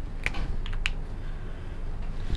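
A few light clicks in the first second, from a whiteboard marker being handled, over a low steady room hum.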